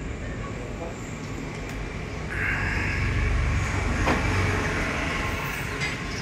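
A motor running nearby, a rumble with a hissing upper band that swells about two seconds in, holds for about three seconds and then eases off. A single sharp click comes about four seconds in.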